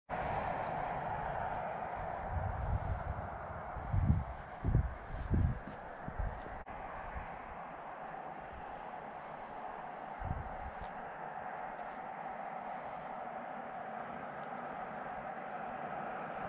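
Steady rushing noise, with several low rumbling gusts on the microphone in the first half.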